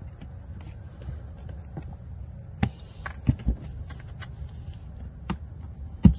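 Razor blade being worked through the plastic of a fog-light opening, giving a few sharp clicks and knocks about midway and again near the end. Under it, crickets chirp steadily in an evenly pulsed rhythm over a low hum.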